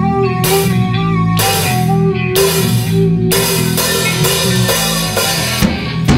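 Rock band playing in a rehearsal room: electric bass, electric guitar and drum kit, with a loud hit about once a second at first and busier, continuous drumming from about halfway through.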